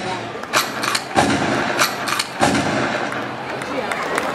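Audience applause starting after the music stops: a few loud, separate claps about every half second, with voices in the crowd.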